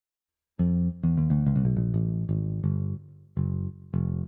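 Vita 2 software synthesizer on its 'Clear Bass' preset playing back a MIDI bass line: a quick run of about a dozen notes starting about half a second in, ending with two longer held notes. The line is the piano part's melody moved down one octave, and it still sounds high enough that another octave down is considered.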